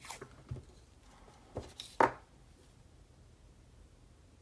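A few soft taps and clicks of a roll of washi tape and paper being handled on a desk as the tape is unrolled and laid onto the planner page, with one sharper click about two seconds in.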